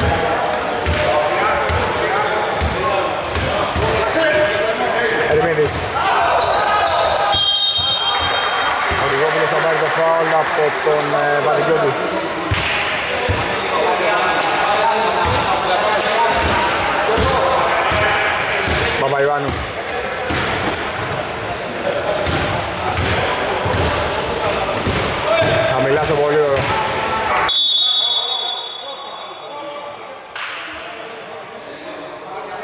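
A basketball bouncing on an indoor court during play, over players' voices calling out. A short high whistle near the end, after which the game sounds fall away.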